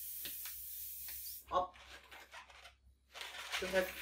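Air hissing steadily out of the neck of a long latex twisting balloon as it is let down slowly, cutting off suddenly about a second and a half in.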